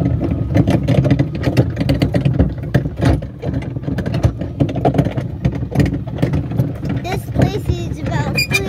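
Riding lawn mower engine running as it tows a train of plastic barrel cars over rough ground, with constant rattling and knocking from the barrels and their hitches.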